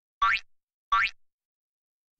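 Two quick rising cartoon 'boing' sound effects, a little under a second apart, each a short upward sweep in pitch.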